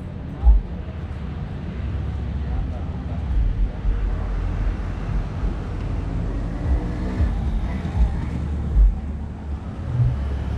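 City street ambience: a steady low rumble of traffic with faint voices of passers-by and a few dull bumps.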